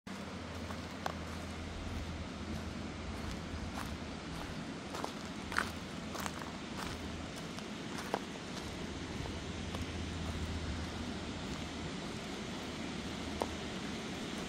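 Footsteps on gravel and grass: a few sharp, irregular scuffs over a steady rushing background noise.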